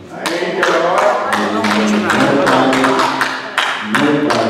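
A man's voice, loud and drawn out, through a microphone and hall speakers, with repeated sharp taps running under it.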